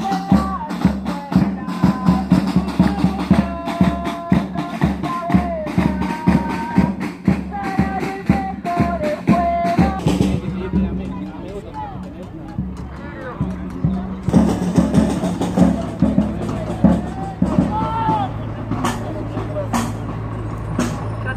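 Protest drums beaten in a fast, steady rhythm with voices over them. About halfway through the drumming stops, leaving outdoor voices, and later a truck engine runs low and steady.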